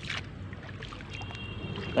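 Shallow water splashing as a hand is swept through it, strongest right at the start, then low sloshing.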